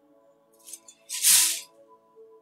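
Soft ambient background music with steady held tones. A brief faint rustle comes just under a second in, then a louder hissing rustle lasting about half a second.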